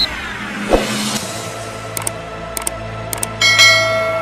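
Logo-animation sound effects: a falling whoosh, a short hit, then a few sharp clicks and a brighter ringing hit near the end.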